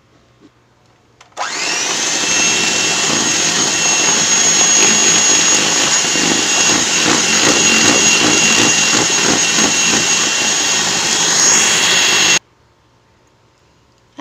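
Electric hand mixer switched on about a second and a half in, its beaters whirring through thick cake batter in a bowl with a steady high whine that rises briefly as it spins up. It runs for about eleven seconds and then cuts off suddenly.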